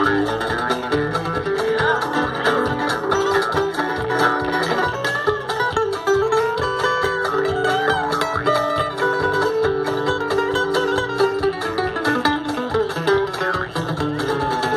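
Live string band playing an instrumental tune through a PA: fiddle and harmonica carry sustained melody lines over acoustic guitar, upright bass and drums at a steady beat.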